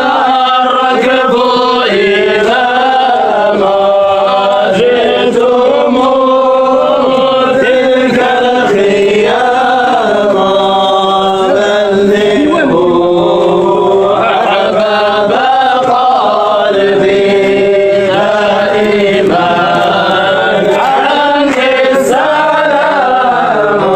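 Male voices chanting a Sufi samāʿ devotional hymn: a slow, drawn-out, ornamented melody sung over a steady low held note.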